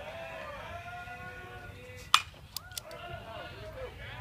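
A single sharp pop about two seconds in, a pitched baseball smacking into the catcher's mitt, followed by a couple of fainter clicks, over background spectator chatter.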